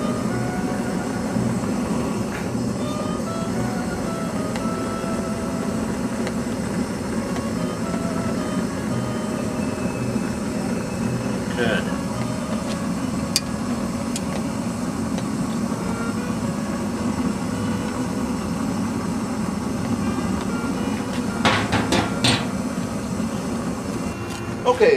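Gas burner running steadily as it fires a raku kiln, a low, even rushing noise. A few sharp metallic clinks come near the end.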